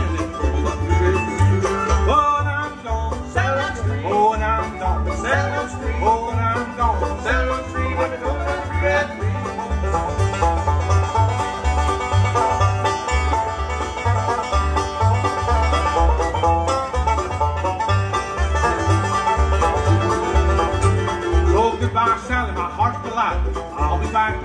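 Bluegrass band playing an instrumental break, with the banjo to the fore over fiddle, mandolin, guitar and upright bass. The bass keeps a steady, even beat underneath.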